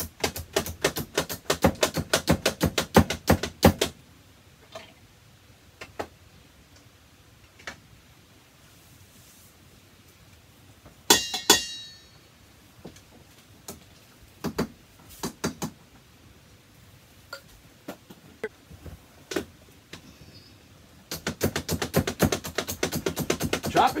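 Kitchen handling sounds: a few seconds of rapid clattering, scattered single knocks, and a short ringing clink of a glass jar against a steel mixing bowl about eleven seconds in. Another run of rapid clatter comes near the end.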